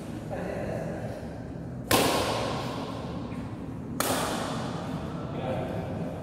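Two sharp cracks of a badminton racket striking a shuttlecock, about two seconds apart, each ringing out in a long echo around the sports hall; the first is the louder. Voices talk in the hall between them.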